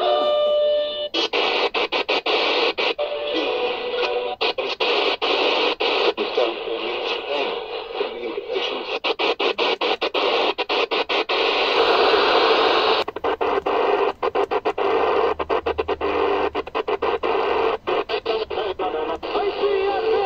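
Shortwave reception from a TEF6686 DSP radio's speaker: a music station briefly at the start, then hiss and static with music faintly underneath, cut by many short gaps as the tuning knob steps across the band.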